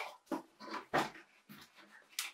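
Cardboard box being opened by hand, its lid worked loose and lifted: a series of short cardboard scrapes and knocks.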